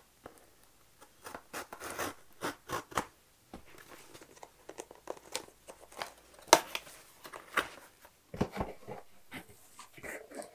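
Scissors cutting the packing tape on a cardboard mailer box, then the box being worked open, with irregular scrapes, rustles and clicks of cardboard. The loudest is one sharp snap about six and a half seconds in.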